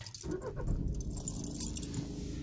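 Keys jangling on the ignition key, then about a quarter second in the Audi A3's 1.6 TDI diesel engine starts and settles into a steady low idle.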